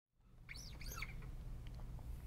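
A bird chirping faintly: a few quick calls that rise and fall in pitch, about half a second in, over a low steady hum.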